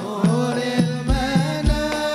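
Sholawat, an Islamic devotional song, sung by male voices in unison over hadroh frame drums and hand drums. The low drum strikes come in a steady beat of about two a second.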